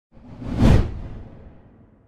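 A cinematic whoosh sound effect that swells quickly to a deep, full peak under a second in, then fades away over the next second and a half.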